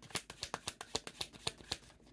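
A deck of reading cards being shuffled by hand: a quick, even run of card snaps, about seven a second, stopping near the end.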